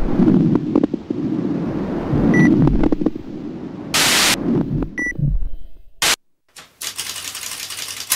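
Sound-effect intro: a rumbling, crackling noise with loud bursts of hiss and short high beeps about two and a half seconds apart, which cuts off suddenly about six seconds in. Rapid typewriter-like clicking follows as the title text types itself out.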